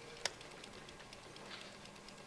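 Quiet room tone with faint hiss and a single sharp click about a quarter second in.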